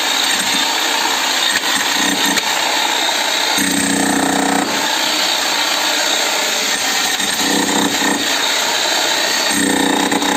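DCK 11 kg electric demolition breaker hammer running continuously. Its motor note shifts a few times.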